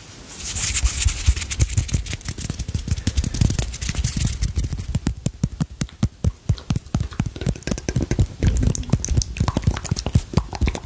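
ASMR trigger sounds made close to the microphone: a brief hissing rub at the start, then a fast, uneven run of soft clicks and taps with low thumps.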